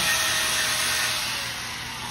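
Handheld angle grinder running, grinding a metal part clamped in a bench vise: a loud steady hiss over a faint motor whine, softening in the second half.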